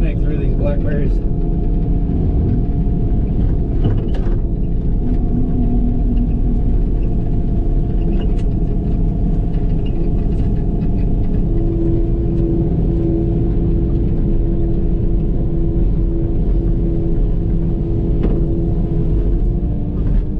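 Excavator's diesel engine and hydraulics running steadily under load, heard from inside the cab, with a deep rumble. A steady hum joins about halfway through, and there are a few short knocks.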